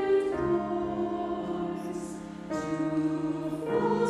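Choir singing slow, sustained chords, changing chord a couple of times; it softens about two seconds in and swells again half a second later.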